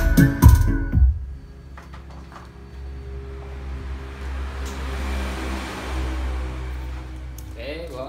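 Music with a heavy bass beat played through a loudspeaker under test, which cuts off about a second in. It leaves a quieter low steady hum and room noise, with a voice near the end.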